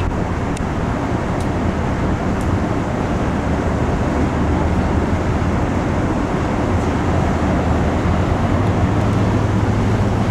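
Steady low rumbling outdoor background noise with a low hum underneath that grows a little louder in the second half.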